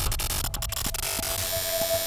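Electronic sound design of a logo sting: crackling static and glitchy noise over a low hum, with a steady mid-pitched tone coming in about a second and a half in.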